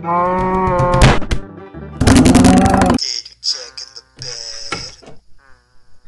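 A cow mooing twice: two long, loud moos, one at the start and one about two seconds in. Quieter, shorter pitched sounds follow.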